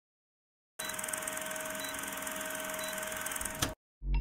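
A steady hiss with faint high steady tones in it. It starts suddenly under a second in and cuts off with a click shortly before the end.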